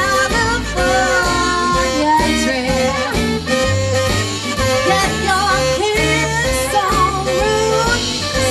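Live swing band playing, with a woman singing lead vocals into a microphone over the band.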